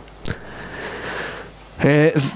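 A click of a handheld microphone being handled, then about a second of breath drawn close to the microphone, before a man's voice starts near the end.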